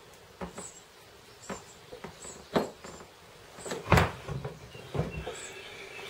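Clicks and knocks of circlip pliers and a piston being handled on a workbench, a handful of separate strikes with the loudest about four seconds in.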